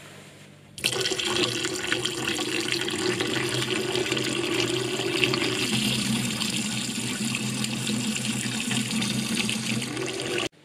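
Tap water running steadily into a glass beaker of mandarin segments in a stainless steel sink, rinsing out the acid used to dissolve their inner skins. The flow starts abruptly about a second in.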